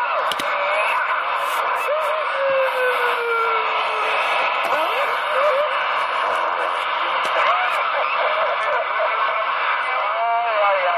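CB radio receiver's speaker putting out steady, narrow-band static with heterodyne whistles and warbling tones gliding up and down over it, including one long falling whistle about two seconds in.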